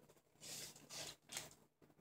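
Faint chewing of a mouthful of burger: three soft, short noises in the first second and a half.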